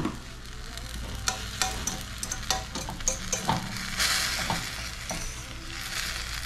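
Chopped carrots and greens sizzling in a stainless steel frying pan with a little water, a fork stirring them and clicking against the pan now and then. The sizzle grows louder about four seconds in.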